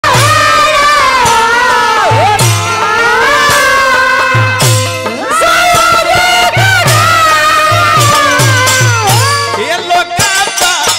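Live Bhojpuri folk stage music: a loud gliding melody over a repeating low drum beat, with sharp percussion strikes, played steadily through.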